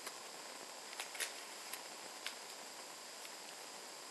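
Quiet room tone with a few faint, light clicks and taps of handling, scattered about a second apart.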